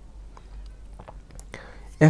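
A pause in speech: a steady low electrical hum with a few faint, short clicks.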